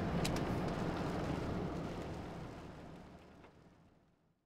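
Steady ambient room noise, a hiss with a low hum, fading out gradually to silence, with a faint click just after the start.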